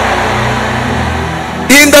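Church band's keyboard and bass guitar holding low sustained notes as a soft backing under prayer; a man's voice comes in near the end.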